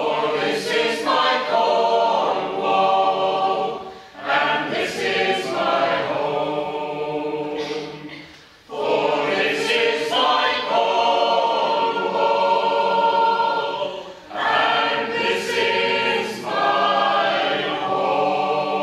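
Mixed choir of men's and women's voices singing in harmony, in phrases of several seconds each with brief pauses between.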